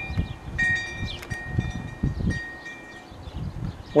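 Wind chimes ringing on and off, several clear high tones sounding at different moments and ringing on, over a low rumble.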